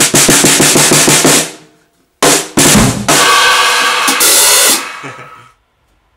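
Drum kit played with sticks, its snare muffled by a knitted cloth laid on it: a fast run of strokes for about a second and a half, then, after a short gap, a loud accented hit with cymbals crashing and ringing out over about three seconds.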